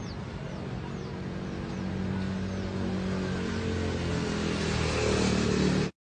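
A motor vehicle's engine running amid road noise, a low steady hum that grows louder over the last few seconds, then the recording cuts off abruptly.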